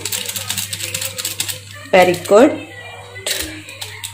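A foil spice sachet crinkling and rattling as it is shaken and tapped to empty the masala powder into the pan: a quick run of small clicks, loudest a little after three seconds in.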